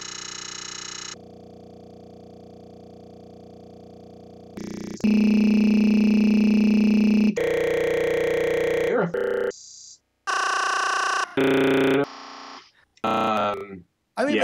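Broken live-stream audio: stuck fragments of sound held as flat, buzzing tones in blocks that switch abruptly every second or two, dropping out completely for a moment near the middle and stuttering toward the end. This is a digital stream or codec failure, not real sound from the room.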